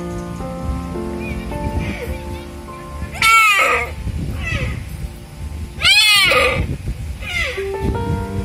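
Deer bleating, a string of short calls over background music of held notes; two loud calls about three and six seconds in, with fainter calls between them.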